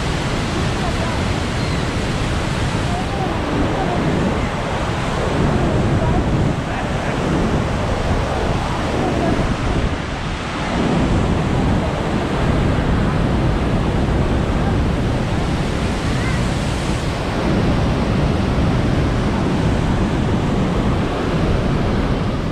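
Steady roar of Niagara's Bridal Veil and American Falls heard close up from the base, a constant rushing of falling water.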